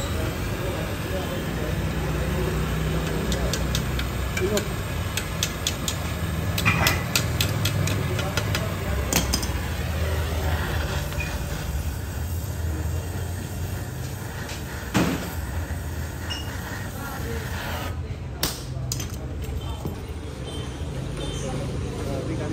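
Gas welding torch hissing steadily while brazing a stainless steel motorcycle exhaust, over a low workshop hum, with a run of light metallic clicks and taps a few seconds in and a few sharper single knocks later on.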